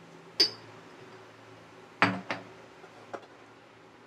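A glass jar clinks once, sharp and ringing, then kitchen things are set down and handled: a loud knock about halfway through, a second knock right after it, and a light tap near the end.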